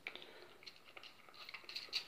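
Quiet handling noise: a few faint clicks and crackles of a plastic spray bottle being handled over a microfibre cloth.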